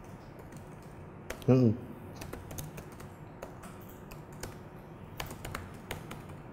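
Laptop keyboard typing: scattered keystroke clicks as a terminal command is entered. About a second and a half in, a brief voiced sound from the typist is the loudest moment.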